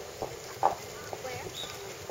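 Voices of people talking in the background, with a few short sharp knocks, the loudest about two-thirds of a second in.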